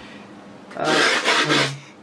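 A hand rubbing across the coarse, sandpaper-like grip tape of a skateboard deck: a rough scraping rub lasting about a second, starting just under a second in.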